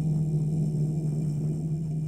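A steady low ringing tone with overtones, held without fading under the quiet close of an acoustic guitar and bass song.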